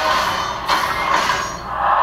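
Action trailer soundtrack: dense music mixed with sound effects, dipping briefly near the end.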